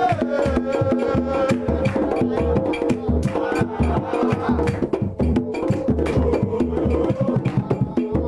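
Football supporters' jama: drums beating a steady rhythm with sharp, clicking percussion, and voices singing a chant over it.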